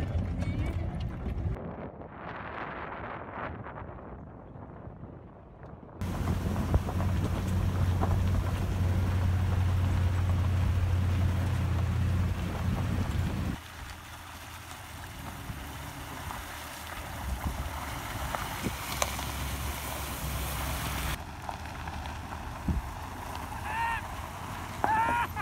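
Chevrolet pickup truck driving slowly on a rough dirt road: engine and road noise, mixed with wind noise on the microphone. The sound changes abruptly several times (about 1.5, 6, 13.5 and 21 seconds in), and a steady low hum is loudest from about 6 to 13.5 seconds.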